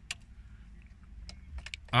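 A few light plastic clicks from a car's steering-column stalk switch being pressed: one just at the start and a quick cluster near the end, over a low steady background rumble.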